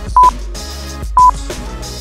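Two short, loud electronic beeps about a second apart from a workout interval timer, counting down the last seconds of a rest break to the next exercise, over background music.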